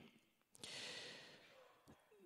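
A man's soft breath at the microphone during a pause in speech. It starts about half a second in, lasts about a second and fades away, with small mouth clicks at either end.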